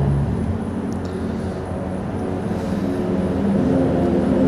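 A steady low engine drone, with a pitch that shifts slightly about halfway through.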